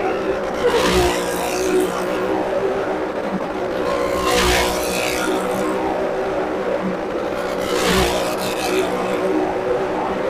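Motorcycle engine running hard as it circles the vertical wooden wall of a well-of-death drum. The sound swells each time the bike passes close, about every three and a half seconds.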